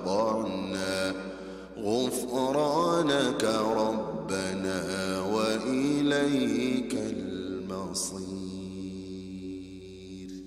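A man's voice reciting the Quran aloud in the melodic chanted style of tajweed, with long held and ornamented notes in a few phrases. The last phrase trails off near the end.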